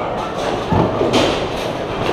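Bowling alley din: a steady rumble of balls rolling down the lanes, with a burst of pin clatter just past the middle and faint voices underneath.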